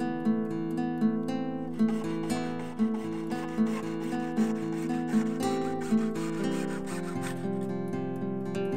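Strummed acoustic guitar music, with the rasping strokes of a jeweller's saw cutting a thin sheet of clear plastic from about two seconds in until near the end.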